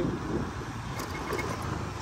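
Motorbike being ridden: a steady low engine and road rumble.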